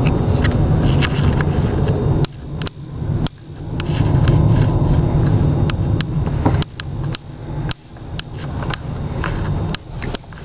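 Low rumble of a car driving slowly, heard from inside the cabin, with scattered clicks and knocks and a few sudden dips in level.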